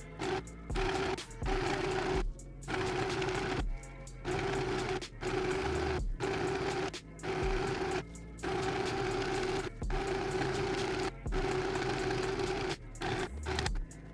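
Portable mini sewing machine stitching a straight seam through satin, its motor humming in short runs of about a second with brief stops, over background music.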